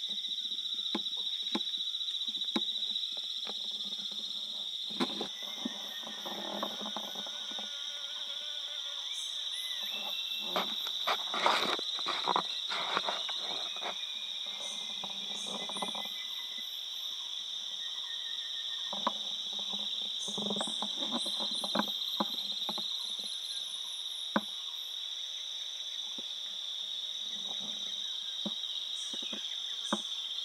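A steady, high-pitched drone of forest insects runs throughout. Scattered clicks and rustles sound over it, heaviest in the middle, with short high chirps here and there.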